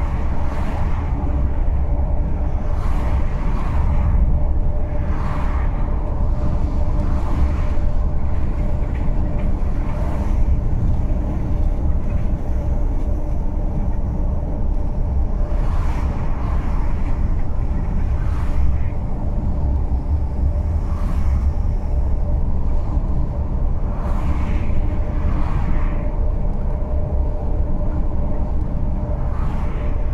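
Steady low road rumble and engine hum of a vehicle driving along a two-lane road, with several short whooshes as oncoming vehicles pass.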